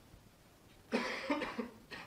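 A man coughing: three quick coughs about a second in, then a shorter fourth near the end.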